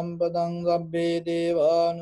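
A Buddhist monk chanting Pali verses in a steady, near-monotone male voice, the syllables moving over one held pitch.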